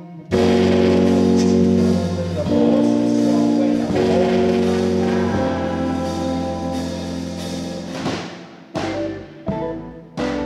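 Live band music: loud sustained chords over a deep bass come in just after the start and change every second or two. They die away near the end, followed by two short chords.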